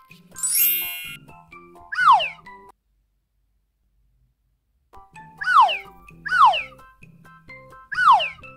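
Light background music overlaid with cartoon sound effects: a rising sparkly chime near the start, then sharp falling swoop effects, one about two seconds in and three more in the second half. A silent gap of about two seconds falls in the middle.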